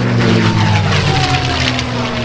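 P-51 Mustang's Merlin liquid-cooled V-12 engine and propeller, running loud and steady in a flyby, the pitch falling slowly as the aircraft passes.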